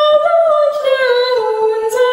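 A woman singing a slow hymn melody in long held notes that step up and down in pitch.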